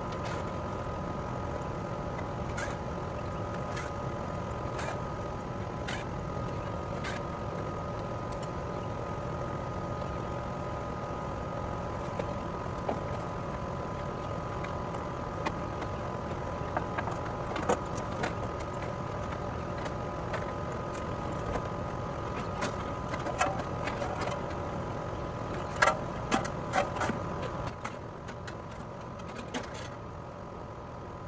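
A steady machine hum with a few fixed tones runs throughout. Over it come light clicks and then sharper metal clanks, loudest near the end, as the top fan-and-grille panel of an AC condenser is unscrewed, lifted off and set down.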